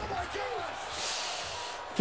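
Faint voice in the background with a soft breath out through the nose about a second in.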